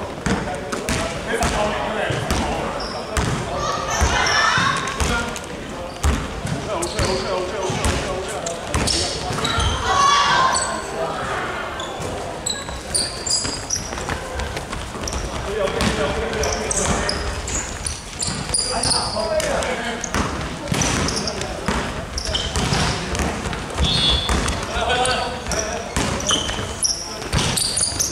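A basketball bouncing repeatedly on a hardwood gym floor during play, with players' voices calling out over it.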